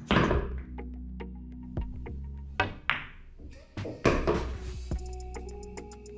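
Pool balls knocking on a pool table after a shot: several sharp clacks and thuds as the balls strike and the cue ball comes off a cushion, the loudest right at the start, over steady background music.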